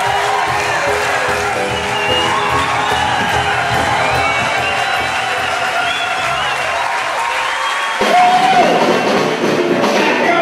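Live music played to an audience, with the crowd cheering and applauding through it. About eight seconds in, the sound changes suddenly, the deep bass drops away and a single pitched line comes up.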